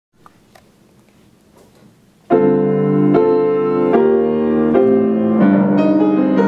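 Faint room noise with a few small clicks, then about two seconds in a piano begins a song introduction, playing sustained chords that change roughly every second.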